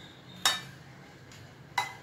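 Spoon clinking against a bowl twice, about a second and a half apart, while fruit salad is stirred, each clink ringing briefly.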